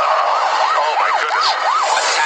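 Police car siren in fast yelp mode, its pitch rising and falling about four times a second, over a steady hiss of noise.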